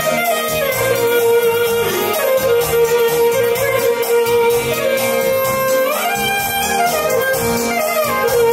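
Traditional Albanian dance music: a clarinet playing an ornamented melody over electronic keyboard (organ) accompaniment, with a quick upward run near six seconds.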